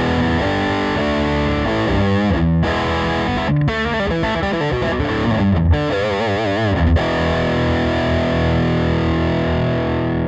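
PRS 513 electric guitar played through a Mesa/Boogie Throttle Box distortion pedal on its high-gain setting, with its internal low-end boost switch engaged, into a Fender Princeton Reverb amp: a thick, massive, heavily distorted riff with lots of low end. A wavering vibrato note comes near six seconds, then a held chord rings out from about seven seconds.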